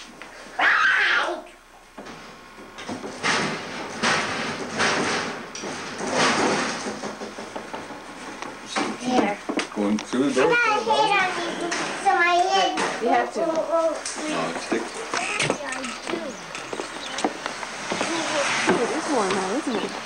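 Young children's voices, chattering and calling out in high, wavering tones, with some rustling and handling noise in the first few seconds.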